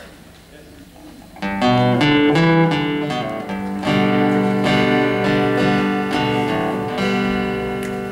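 Live country band starting a song's instrumental intro about a second and a half in: a strummed acoustic guitar, with keyboard chords held underneath from about four seconds.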